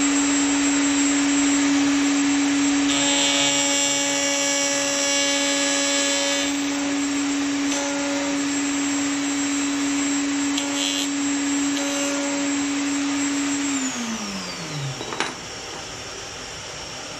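Table-mounted router running at a steady high pitch while a bearing-guided Bosch Professional flush-trim bit trims a wooden corner to a radius along a template; the cutting into the wood is louder and harsher from about three to six seconds in and again in short touches later. Near the end the router is switched off and its pitch falls as it spins down.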